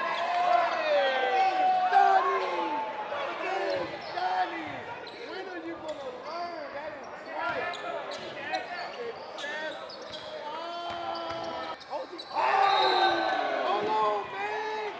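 Basketball game sound in a gym: a ball bouncing on the hardwood, with indistinct players' voices and calls echoing in the hall. It grows louder about two seconds before the end.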